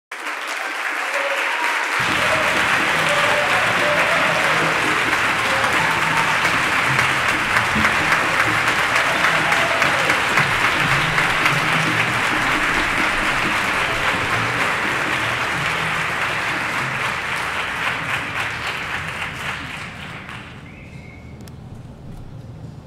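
Audience applauding: a steady mass of clapping that fades out about twenty seconds in.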